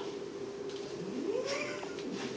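A person's short, quiet vocal sound, rising in pitch like a puzzled "hm?", about a second in. It sits over a faint steady hum.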